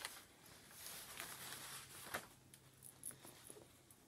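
Faint rustling of paper-backed adhesive web sheets being picked up and laid out by hand, with a few short crisp crinkles.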